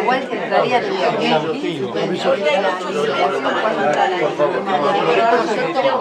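Crowd chatter: many people talking in Spanish at once, their voices overlapping.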